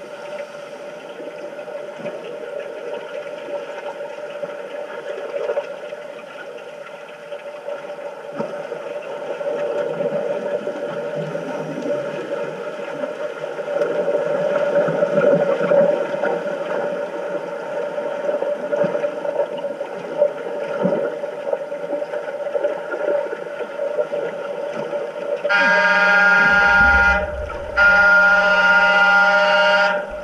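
Underwater pool noise of a game of underwater rugby, the water churned by swimmers' fins, with a steady hum running through it. Near the end an underwater signal horn sounds twice, a loud buzzing tone of about two seconds each with a brief break between.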